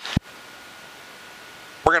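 Steady even hiss of a cockpit headset intercom feed, with a faint thin steady tone in it and a short click just after the start; the aircraft engine is not heard. A man's voice returns near the end.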